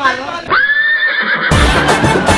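A dubbed-in comic sound effect: a falling cry, then a high cry that rises and holds for about a second, like a horse's whinny. Background music comes in loudly about one and a half seconds in.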